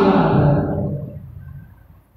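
A man's voice speaking, ending a phrase about half a second in and trailing away, fading to near silence by the end.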